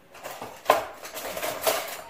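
Objects being handled on a kitchen counter: a sharp knock under a second in, followed by about a second of clattering and rattling.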